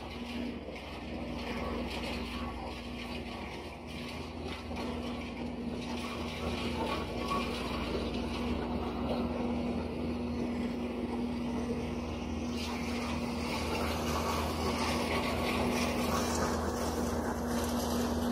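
Engine of a towable brush chipper running at a steady speed with a constant hum, growing louder and noisier over the second half as it is approached.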